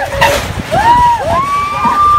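Riders screaming on a swinging Viking pirate-ship ride: several rising-and-falling shrieks, the last held for about a second near the end, over a constant low rumbling noise.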